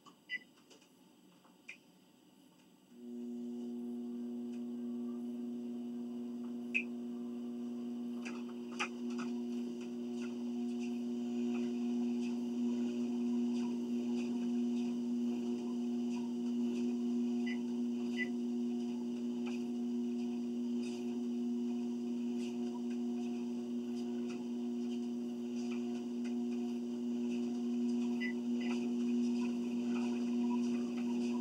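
Treadmill motor starting up about three seconds in, then running with a steady low hum, after two short ticks from the console.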